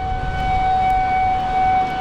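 Outdoor tornado warning siren sounding one steady, unwavering tone over a low rumble.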